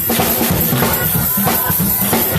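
Gospel music with a drum kit keeping a steady beat, bass drum and snare.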